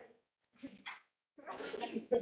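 Short bursts of a person's voice, then a few spoken words broken by a laugh near the end.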